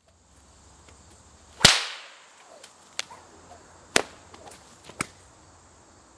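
Bullwhip cracking: one loud crack with a fading tail, then three sharper, quieter cracks about a second apart. Each crack is the tip of the whip breaking the sound barrier.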